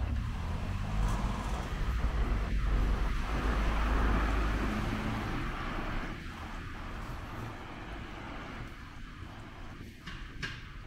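A motor vehicle passing on a wet street: a deep rumble and tyre hiss swell over the first few seconds and fade away after about five seconds.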